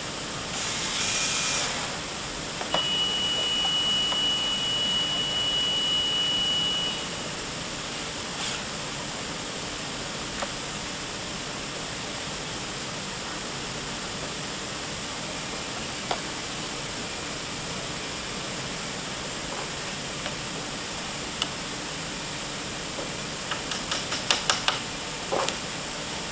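A cordless drill driving a screw into a solid-wood chair frame: a short burst about a second in, then a steady whine for about four seconds, over a constant background hiss. Near the end comes a quick run of sharp taps.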